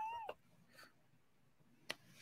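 A short high-pitched vocal squeak at the tail of a laugh, rising and falling in pitch, then near silence with a faint click near the end.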